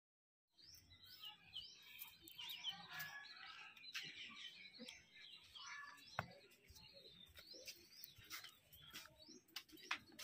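Faint chirping and twittering of small birds, many short rising and falling calls, starting about half a second in, with a few soft clicks mixed in.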